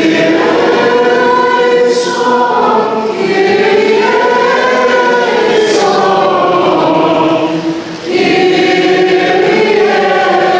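Church choir singing a slow liturgical chant during the Mass, pausing briefly between phrases twice.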